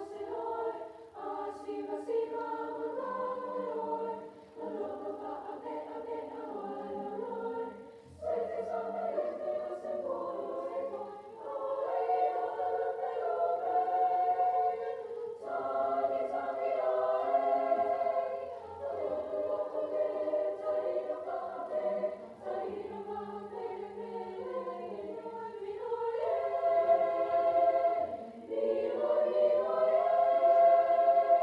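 High school choir singing a Samoan song in several parts, in phrases a few seconds long with short breaths between them, growing louder towards the end.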